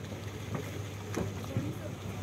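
Outdoor ambience: a steady low rumble of wind on the microphone, with faint voices of people and a couple of soft knocks.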